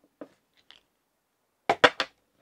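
A few faint small clicks, then two or three sharp clicks close together near the end: the small metal planet carrier from a cordless drill's gearbox being lifted off its shaft and set down on the workbench.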